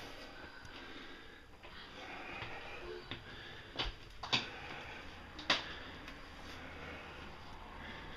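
Faint close breathing and sniffing with handling noise from a handheld camera, broken by three sharp clicks or knocks, the loudest two about four and a half and five and a half seconds in.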